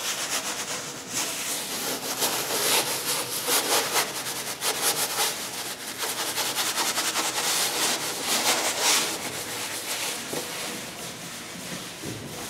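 Glaze applicator pad and cheesecloth rubbing and dragging across a painted wall in a run of quick, irregular scrubbing strokes.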